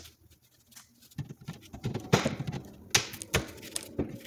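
A metal pry bar being worked between a wooden cabinet face frame and the cabinet box to pry the frame loose. About a second in, scraping and creaking wood begin, followed by a few sharp knocks.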